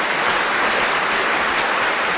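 A loud, steady, even rushing noise, like heavy rain or static, with no tone or rhythm in it.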